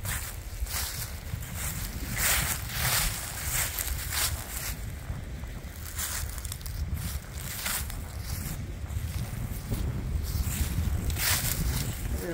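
Wind buffeting the microphone in a steady low rumble, with footsteps rustling through dry fallen leaves and grass every second or two.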